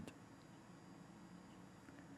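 Near silence: faint room tone and tape hiss during a pause in speech.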